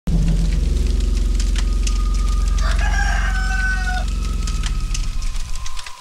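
A rooster crowing once, a single drawn-out call about halfway through, over a loud steady low hum and scattered clicks.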